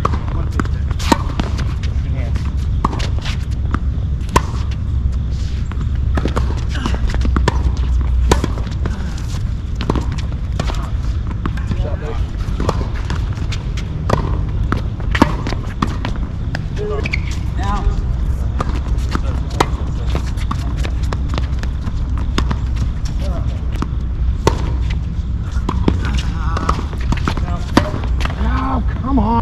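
Tennis balls being struck by racquets and bouncing on a hard court during doubles rallies: irregular sharp pops, several seconds apart in places and quicker in others, over a steady low rumble, with faint voices in the background.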